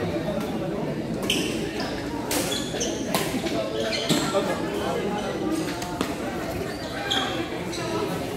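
Badminton rackets striking a shuttlecock: several sharp hits roughly a second apart, echoing in a large gym hall over a steady murmur of spectators' voices.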